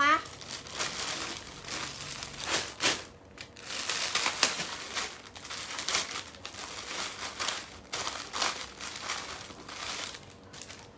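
Clear plastic clothing bags crinkling and rustling in irregular bursts as a garment is pulled out and handled.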